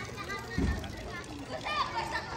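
Children playing and calling out to each other at a playground, their high voices rising and falling, with a low thump about half a second in.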